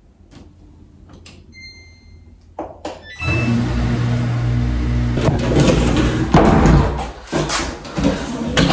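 Samsung front-load washing machine's control panel: light button clicks and a short electronic beep, then from about three seconds in a louder steady low hum as the washer starts, with scraping and knocks from the laundry-closet doors being handled near the end.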